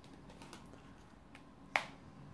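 A tarot card snapped down onto a spread of cards on the table: one sharp card snap near the end, after a few faint ticks of cards being handled.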